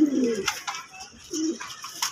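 Domestic pigeons cooing in a wire cage: a low, wavering coo at the start and a shorter one about a second and a half in.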